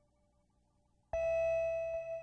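Berlin-school electronic music: about a second of near quiet as a previous note dies away, then a single bright sustained synthesizer note comes in suddenly and holds.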